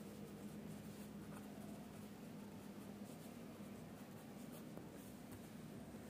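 Faint scratching of a pen writing on paper, in short strokes as words are written out.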